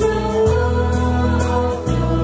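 A choir singing a hymn over sustained instrumental chords that shift about every second and a half, the music accompanying the offertory procession of a Catholic mass.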